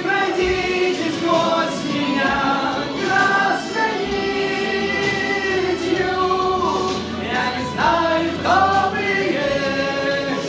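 Male voices singing a song live, with long held notes that slide between pitches.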